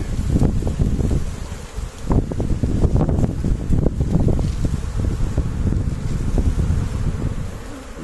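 A swarm of Asian honey bees buzzing as they are driven off their cluster on a branch with a leafy twig, over irregular low rustling and buffeting.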